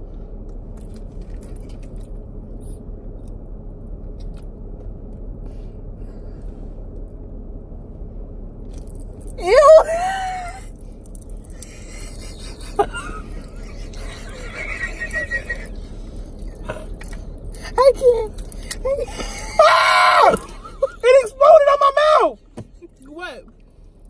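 Steady low hum inside a car, then about nine and a half seconds in a loud scream from two women, followed by more shrieks and laughter near the end. They are reacting to cola popping candy popping in the mouth.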